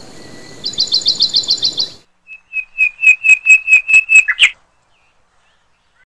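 Birds calling: a fast run of about ten short, high upswept chirps, then, after a brief gap, a louder run of about ten evenly spaced whistled notes that ends abruptly.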